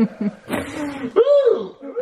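Men laughing and chuckling, with one voice sliding up and then back down about a second in.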